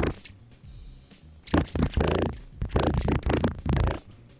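A recorded spoken voice line played back through a Doppler Shifter effect, so the words come out garbled and warbling. This is the first step of a scrambled-communications voice effect. The voice comes in broken bursts, most of them between about a second and a half in and just before the end.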